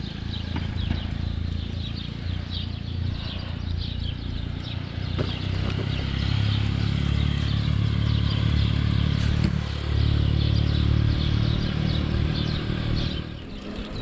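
Wind rumbling on the microphone with road noise while riding a bicycle, heaviest from about six to thirteen seconds in, with many short high chirps in the background.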